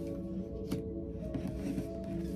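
Ambient background music with long held tones, with a few light clicks of tarot cards being placed and slid on a tabletop, the clearest a little under a second in.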